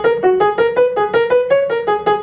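Grand piano played with a fast finger staccato: a quick run of short, detached single notes, about eight a second.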